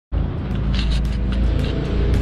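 Background music with a deep, steady bass, starting suddenly right at the beginning.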